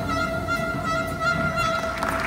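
Clarinet holding one long, steady note in a live big-band jazz performance, with soft band sound beneath.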